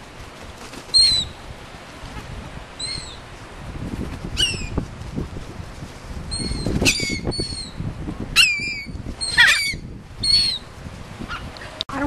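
Gulls calling in repeated short, high cries that come quicker and overlap in the second half. Wings flap close by underneath the calls.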